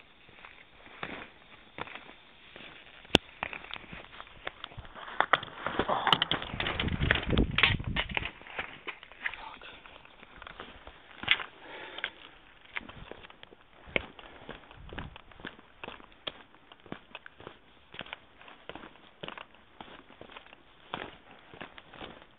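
A hiker's footsteps and scrambling over loose sandstone rocks: irregular crunches, scrapes and knocks, with a louder stretch of rubbing noise about five to eight seconds in.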